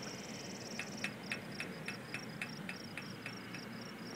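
Insects chirping: a steady, high, pulsing trill, joined about a second in by a regular series of sharp ticks, about four a second.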